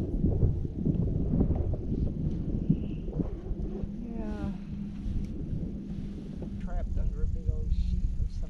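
Wind buffeting the microphone, with a steady low hum coming in about two and a half seconds in and brief faint voices.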